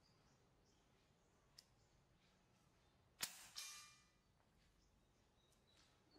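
A single shot from an FX Impact MK2 .22 PCP air rifle about three seconds in: a sharp crack, followed about a third of a second later by a second report that rings briefly and fades over about half a second.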